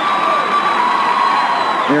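Large crowd cheering steadily in a wrestling arena, a dense wash of many voices.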